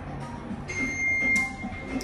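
Elevator signal beep: a steady high electronic tone starts about two-thirds of a second in and holds, with a short click partway through, over background music.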